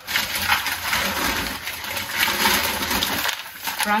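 Thin plastic carrier bag and packaging crinkling and rustling as groceries are pulled out by hand, with a crackle of many small clicks.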